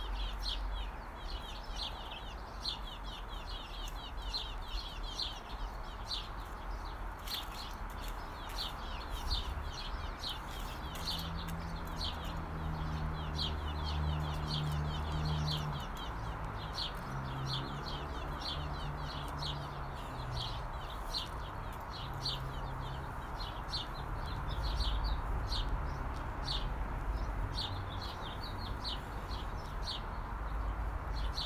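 A small bird chirping over and over, short high chirps several times a second. A low, steady hum comes in for several seconds in the middle.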